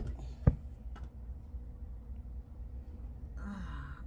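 A deck of tarot cards is set down on a table: one sharp click about half a second in, then a lighter one a moment later. A short breathy sigh follows near the end.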